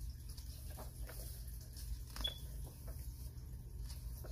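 Pages of a paperback coloring book being turned and smoothed flat by hand: faint paper rustles and soft taps, over a steady low hum.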